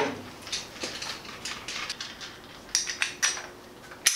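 Small metal parts clinking and clicking as they are handled: a string of irregular light knocks, with a sharper cluster near the end.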